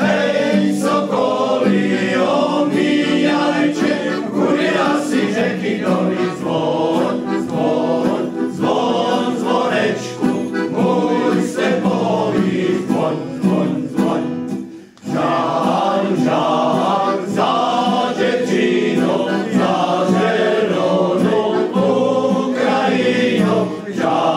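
Male choir singing in chorus, accompanied by accordion and acoustic guitar, with a brief break about fifteen seconds in before the singing resumes.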